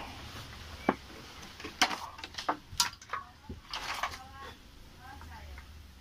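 Sharp clicks and knocks of a hand tool against the parts of a dismantled Stanley electric planer on a workbench. Several come in the first four seconds, the loudest about one and three seconds in.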